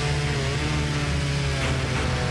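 Chainsaw cutting through the trunk of a fallen tree, its engine running steadily under load.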